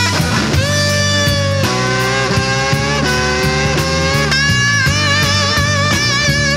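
Blues electric guitar lead on a Stratocaster-style guitar, with long sustained notes played with a wide vibrato and a bend up into a note about half a second in, over the band's drums.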